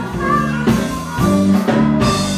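Live blues band playing an instrumental passage with no vocals: electric guitar, electric bass and drum kit, with a harmonica.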